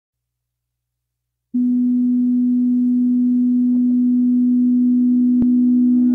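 A played-backwards music track: silence, then a steady low sustained synth tone that starts abruptly about a second and a half in and holds, with a single faint click near the end.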